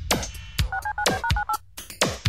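Touch-tone telephone dialling: a quick run of about eight two-note DTMF beeps about a second in, set into an electronic track over drum-machine hits.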